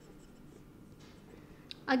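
Marker pen stroking across a whiteboard as a circuit diagram is drawn, faint and scratchy, with a short click near the end.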